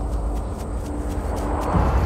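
Cinematic trailer soundtrack: a deep, steady rumble under a sustained music drone, with a rushing whoosh swelling near the end as the shot tears through the trees.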